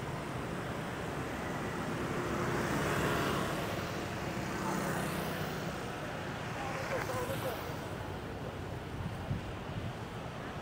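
City street traffic, mostly motorbikes and scooters, running past close by, the noise swelling and fading as each one passes, loudest around the middle.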